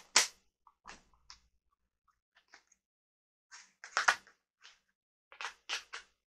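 Rigid plastic packaging trays being handled, giving scattered sharp clicks and crinkles, with the loudest snaps just after the start and again about four seconds in.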